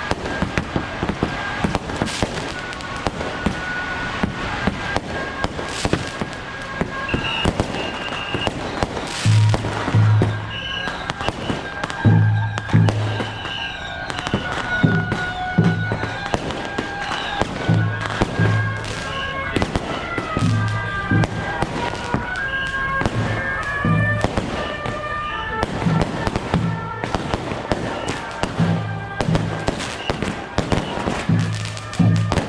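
Strings of firecrackers crackling continuously, over procession band music: a high wind-instrument melody and, from about nine seconds in, a deep drum beating in repeated pairs.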